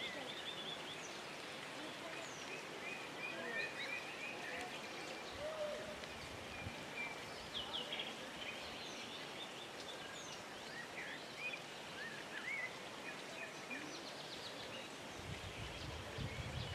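Small birds chirping and calling repeatedly in short, quick notes over a steady background hiss.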